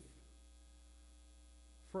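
Faint, steady low electrical hum, mains hum in the sound system, heard in a pause in a man's speech. One word trails off at the very start and the next begins at the very end.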